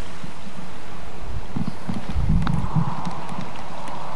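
Steady wind noise on a camcorder microphone at the water's edge, with a short run of low bumps and thumps about halfway through.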